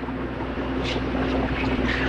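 Pause in a lecture recording: a steady low electrical hum and rumbling background noise from the hall and the recording chain, growing slightly louder toward the end.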